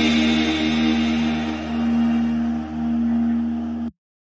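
Background music of long held, sustained notes that cuts off suddenly near the end, leaving silence.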